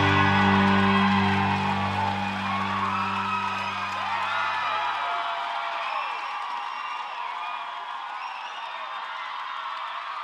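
A band's final held chord ringing out and dying away over the first five seconds or so, under a crowd cheering with whoops, the cheering gradually fading.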